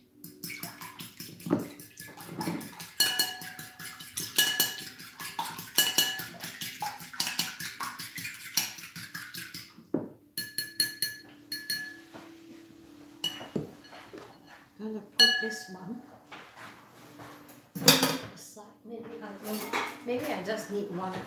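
Fork whisking egg in a ceramic bowl: fast clinking strokes of metal against the bowl, which rings after each hit. The strokes run densely at first, then come in shorter bursts with pauses from about halfway on.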